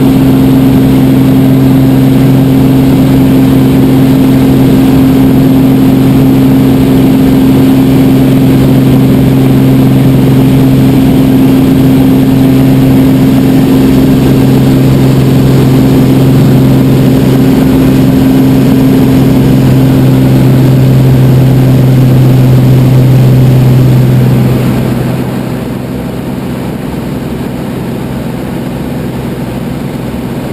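Light aircraft's engine and propeller running steadily at climb power, heard from inside the cabin as a loud, even drone. About 25 s in the sound drops noticeably in level and stays lower.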